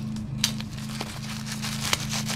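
Small handling noises from a product's packaging, a few short clicks and crinkles, the sharpest about half a second in, over a steady low hum.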